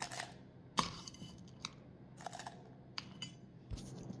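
A metal spoon clicking and scraping against a drinking glass and the Oreo wrapper lining it as crushed Oreo crumbs are spooned in: a handful of light, scattered clicks, the sharpest a little under a second in.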